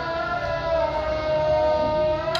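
A long, slightly wavering held tone from a loudspeaker, the sunset signal that the day's Ramadan fast may be broken.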